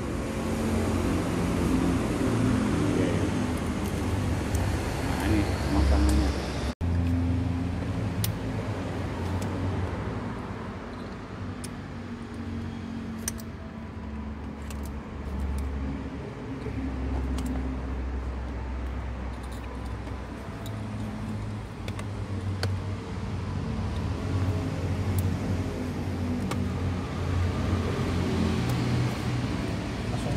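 Low rumble of vehicle engines running at idle, continuous and shifting, with scattered light clicks and knocks of handling and faint voices.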